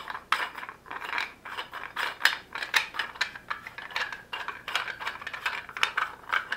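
Irregular clicks, rattles and scraping from a ball-joint speaker wall-mount bracket being handled, a few clicks a second, as its threaded ball piece is turned by hand and screwed into the bracket base.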